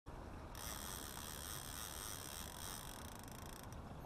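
Steady open-air background noise aboard an anchored fishing boat on a lake, heaviest in the low end. A thin, high-pitched buzzing whine sits over it from about half a second in until shortly before the end.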